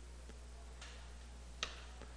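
Faint chalk strokes on a chalkboard: a soft scrape about a second in, then one short, sharp tap of the chalk a little after one and a half seconds, over a steady low hum.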